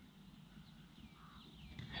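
Near silence: faint outdoor background with a few faint, high, gliding chirps.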